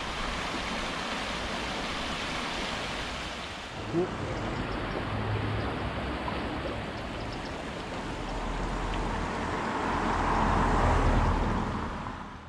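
The upper Ruhr river rushing over stones in its shallow walled channel: a steady flowing-water noise that swells louder near the end.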